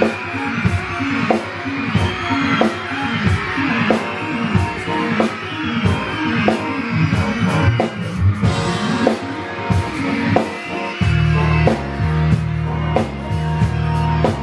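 Live band playing an upbeat groove: a drum kit keeping an even beat under keyboard or guitar chords, with a deep bass line coming in near the end.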